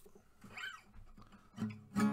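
A short quiet pause, then an acoustic guitar note rings out near the end, followed by the start of a strum.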